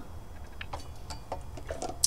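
Handling noise from a silver trumpet being turned over in the hands: a few faint, scattered clicks and taps.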